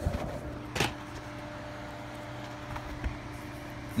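Handling noise of DVD cases: a knock about a second in and a few small clicks, over a steady low hum.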